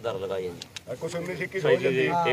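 Indistinct men's voices from a seated crowd, talking over one another, with a brief lull about a second in.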